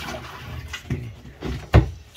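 A pet crocodilian lunging through its terrarium water at a chick held in metal tongs: water splashing, then a loud thump near the end as it strikes.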